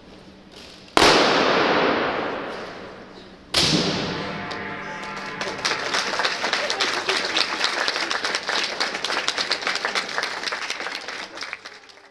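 Military wind band's closing hits: two sudden loud crashes about two and a half seconds apart, each ringing out and fading, the second with a held brass chord. Then audience applause until the sound cuts off.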